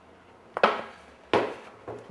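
A squeezed glue bottle spurting twice, two short sputtering bursts of glue and air, about half a second and about a second and a half in; the glue comes out messily.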